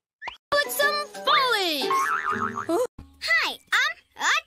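Children's cartoon soundtrack: a high, childlike character voice over children's music. About halfway through there is a long sweep falling in pitch.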